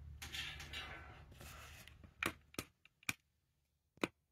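Whirlpool top-load washer clicking as its cycle starts, just ahead of the water fill. A faint low hum comes first, then about halfway through four short, sharp clicks about a quarter second apart.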